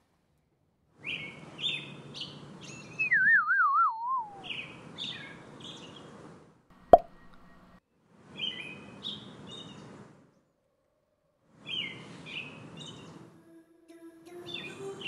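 Birdsong sound effect in four short bursts of chirping. A wavering whistle slides down in pitch about three seconds in, and a single sharp water-drop plop comes about seven seconds in.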